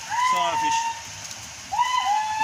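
Two high whistled notes, each sliding quickly up and then held level: one lasting about a second, another starting near the end. Steady rushing water runs beneath them.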